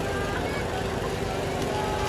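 Steady background din of an outdoor food stall: a constant hum under indistinct voices.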